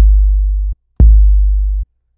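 Sampled 808 bass played on its own from a Maschine pad: deep sustained bass notes with a sharp click at the start, each cut off abruptly after under a second. One note rings at the start and a second is struck about a second in.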